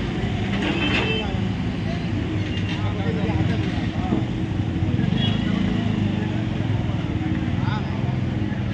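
A motor vehicle engine running steadily, with people talking in the background.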